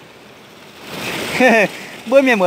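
Small mountain stream running and splashing over rocks, growing louder about halfway through. A short spoken word cuts in about one and a half seconds in.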